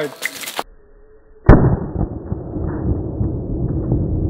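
A single pistol shot from a Beretta 81 chambered in .32 ACP, sharp and sudden about a second and a half in. It sounds muffled and dull and is followed by a steady low rumbling noise.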